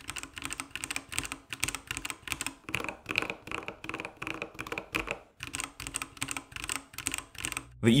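Typing on mechanical keyboards: fast, irregular keystroke clacks, first on the Epomaker EP84 and then, partway through, on the Epomaker TH80, with a brief pause a little after the middle.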